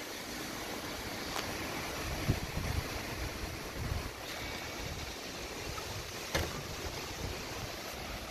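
Strong storm wind rushing through trees, with gusts buffeting the microphone and a couple of sharp clicks.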